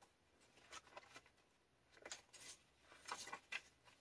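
Faint, brief rustles of paper pages being turned by hand in a junk journal, a few soft handling sounds spread across an otherwise near-silent stretch.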